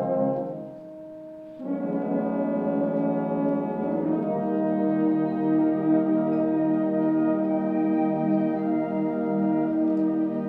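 Concert band of brass and woodwinds playing slow, sustained chords. Near the start the band thins out to one held note for about a second, then comes back in full, with a change of chord a few seconds later.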